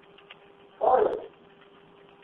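A single short raised-voice cry, about half a second long, coming from the background of a telephone call and sounding muffled and thin through the phone line. A faint steady hum runs under it on the line.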